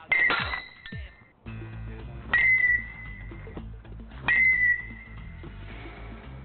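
Baseball bat hitting balls three times, about two seconds apart, each contact a sharp ping that rings on for up to a second. Background music comes in about a second and a half in.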